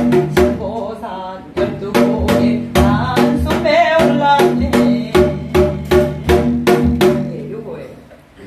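Janggu (Korean hourglass drum) played in the fast jajinmori rhythm, in a varied pattern of deep 'deong' and 'kung' strokes and sharp 'tta' strokes, with a woman singing a Gyeonggi folk song over it. The drumming and singing stop just before the end.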